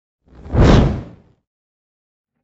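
A single whoosh sound effect for a news logo animation, swelling up quickly and fading away within about a second.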